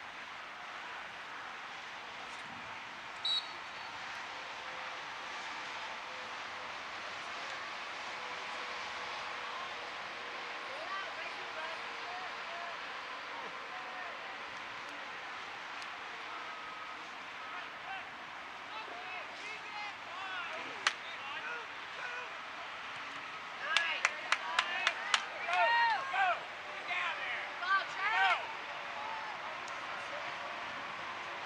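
Soccer-field ambience: a steady background hiss, with players' shouted calls on the pitch that come thicker and louder near the end. A short high beep sounds about three seconds in, and a quick run of sharp clicks comes with the loudest shouting.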